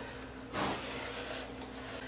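Faint handling noise: a soft, brief rub about half a second in, as hands shift a wire bundle against a generator's plastic housing, over quiet room tone with a faint steady low hum.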